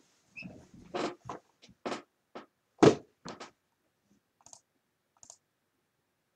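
Sealed cardboard trading-card hobby box being handled and set on a table: a quick string of knocks and clicks, the loudest about three seconds in, then two faint ticks.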